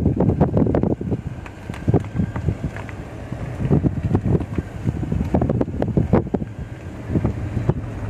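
Wind buffeting the microphone: a rough, gusting rumble that rises and falls irregularly.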